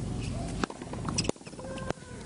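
Tennis ball struck by rackets: a serve followed by the exchange of a rally, three sharp hits about 0.6 s apart, the first just over half a second in.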